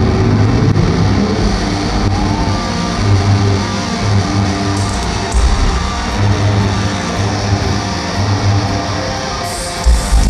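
Live electric guitar solo played loud through a concert PA, recorded from within the audience: sustained low notes held one after another, with a sudden heavy low hit just before the end.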